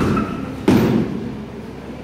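Two dull thuds of padded soft-kit weapons and shields striking as two fighters clash, the second, about two-thirds of a second later, the louder, each with a short echo.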